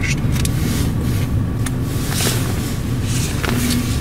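Steady low rumble of a stationary car, heard from inside the cabin, most likely its engine idling. A few soft ticks and rustles from hands handling papers sit on top of it.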